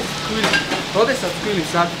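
Men talking in Georgian over a steady hiss of kitchen noise.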